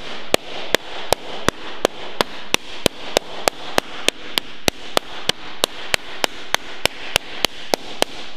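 Flat hardwood slapper striking a sheet of low carbon steel laid over a lead-shot bag: a steady run of sharp slaps, about three a second. The forceful blows are working shape into the flat panel.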